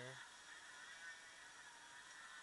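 Near silence: faint steady hiss of room tone, after a brief voiced sound from a person that ends just after the start.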